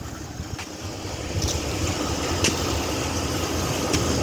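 A parked police car's engine idling, heard close to its front grille, with a few faint clicks over it.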